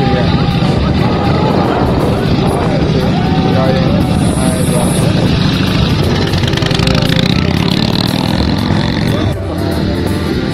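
A vintage Indian motorcycle's V-twin engine running, with voices around it. About nine seconds in, it cuts off suddenly and background music takes over.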